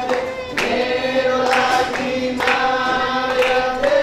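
A group of voices singing a slow Christian worship song together, with long held notes.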